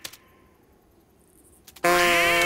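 Cartoon cuckoo clock: a near-quiet stretch with a few small clicks, then near the end a loud pitched call of several wavering tones as its toy duck pops out of the door.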